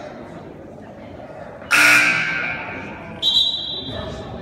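Gym scoreboard horn sounding once, loud, about two seconds in and fading over a second or so, the signal that ends a timeout; a referee's whistle blows briefly near the end.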